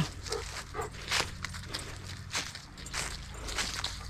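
Footsteps of a walker and a leashed Bernese mountain dog crunching through dry fallen leaves, in irregular steps a few times a second.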